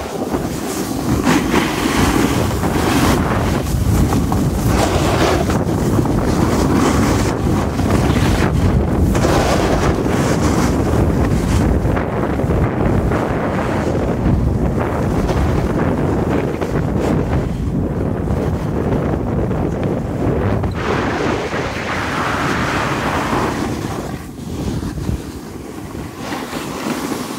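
Wind rushing and buffeting over a phone's microphone during a fast snowboard descent, mixed with the board's edges scraping over packed snow. The level eases off slightly near the end.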